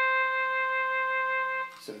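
Synthesized trumpet sound from a Roland SC-55 Sound Canvas, played from a DIY MIDI electronic valve instrument with trumpet fingering: one long held note that fades out near the end.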